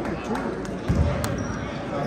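A basketball bouncing on a hardwood gym floor, one strong thump about a second in, over the chatter of spectators.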